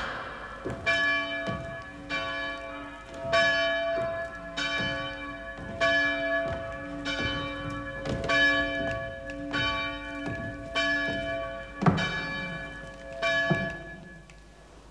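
Church bells pealing for a wedding: a new stroke a little more than once a second, each one ringing on into the next.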